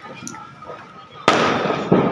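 Fireworks going off: a sudden loud bang about a second and a quarter in that dies away slowly, then a second bang just before the end.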